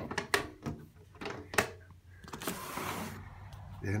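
A window being opened: a few sharp clicks and knocks, then a scraping slide lasting under a second about halfway through.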